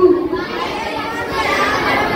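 A boy's recited line into a microphone ends about half a second in, followed by a hall full of children's voices chattering and murmuring together.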